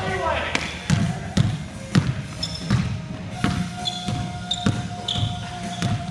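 Basketball bouncing on a hardwood gym floor, one bounce about every half second, with short high sneaker squeaks in the second half.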